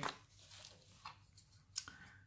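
Paper instruction sheet rustling faintly as it is handled and set down, then a couple of small clicks as the plastic keystone jack body is picked up, the sharper one near the end.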